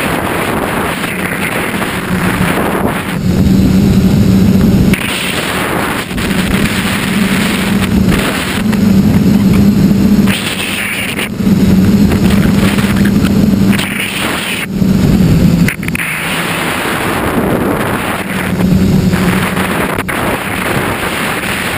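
Tricopter's electric motors and propellers droning steadily, heard from the onboard camera with heavy wind rush on the microphone. The hum swells and eases several times, in surges of one to two seconds.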